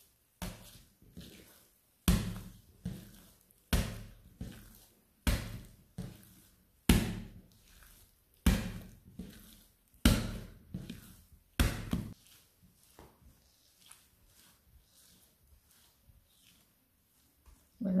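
Soft, wet, high-hydration pinsa dough being lifted and slapped down onto an oiled steel work surface as it is folded closed, a thud about every second and a half for the first twelve seconds, then only faint handling sounds.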